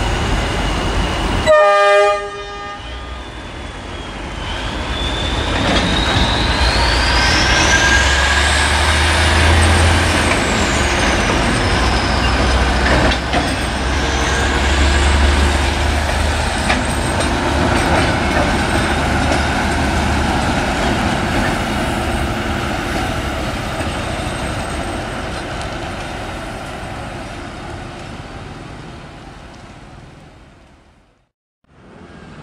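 A rail maintenance vehicle's horn toots once briefly near the start, then the vehicle's engine rumbles low as it moves along the track, with a high whine that rises and then falls. The sound fades away toward the end.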